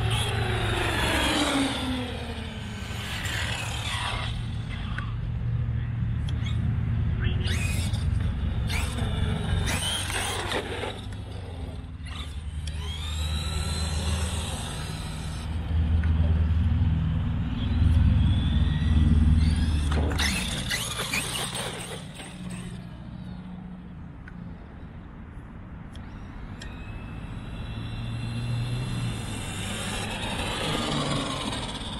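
Electric RC trucks' brushless motors whining as they speed along, several times over, each whine rising and falling in pitch as a truck accelerates and passes, over a low steady rumble.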